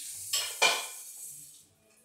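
Purple play sand being pressed and scraped with a red plastic dome, giving a grainy crunch that comes in twice, loudest about half a second in, then fades away by about a second and a half.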